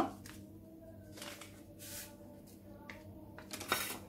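Small paper sachet of vanilla sugar being handled and emptied over a glass bowl of sugar and butter: a few soft paper rustles and light patters, the loudest near the end, over a faint steady hum.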